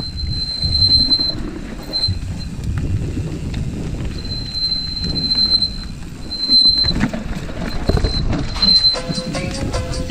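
Mountain bike rolling fast down a dirt trail: rumble of tyres and frame over the ground, with the disc brakes squealing in a high thin whine that comes and goes as the rider brakes, a squeal typical of worn brake rotors and pads. A beat-driven music track comes in near the end.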